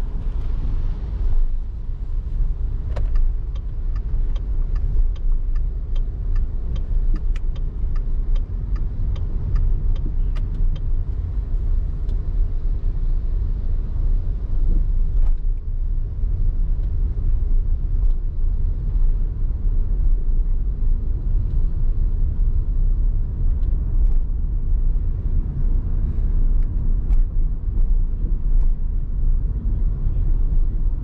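Car driving on a city road: a steady low rumble of tyres and engine. For several seconds in the first third, a run of even ticks sounds about twice a second.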